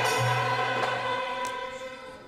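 Turkish classical music (TSM) mixed choir singing a held phrase that fades away in the second half.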